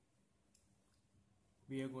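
Near silence: quiet room tone with a faint click or two, then a man's voice starts near the end.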